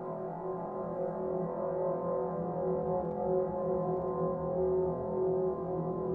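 Grand piano played from inside the case, with the hand on the strings. It gives a sustained drone of several steady low tones over a low rumble, with no struck notes, slowly growing a little louder.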